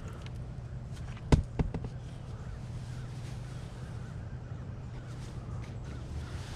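A sharp knock, followed by two lighter clicks, about a second and a half in as junk from a curbside trash pile is handled, over a steady low hum.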